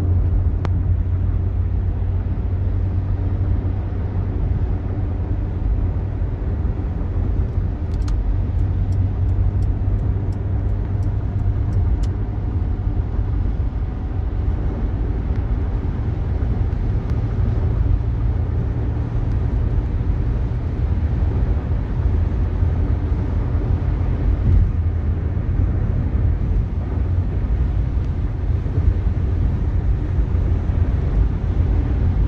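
Steady road and engine noise inside a car cabin at freeway speed: a low, even rumble. Faint ticking comes through for a few seconds about a third of the way in.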